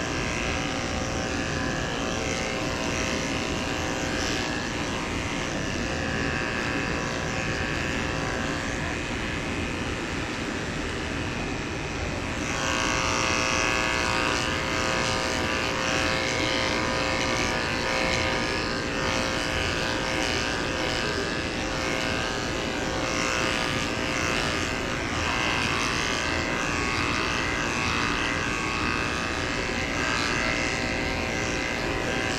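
Corded electric dog grooming clippers running steadily as the blade shaves a poodle's curly coat. About twelve seconds in, the sound brightens and grows slightly louder.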